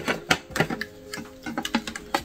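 Plastic clicks and taps as a sport water bottle's flip-top lid is worked by hand: a few separate sharp clicks, then a quicker cluster near the end.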